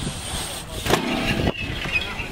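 BMX tyres rolling on concrete, then a sharp clank about a second in as the rider's steel pegs land on a metal rail, followed by a brief scrape of the pegs grinding and another knock.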